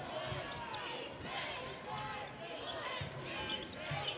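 Basketball court sound: a ball dribbled on the hardwood floor with uneven thuds, over crowd voices and short squeaks.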